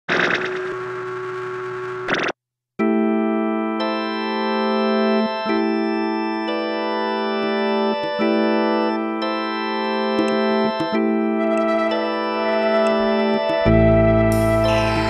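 Lo-fi experimental instrumental music. A short dense chord stops suddenly at about two seconds and is followed by a brief silence. Then come held keyboard chords that shift every second or two, and a deep bass note enters near the end.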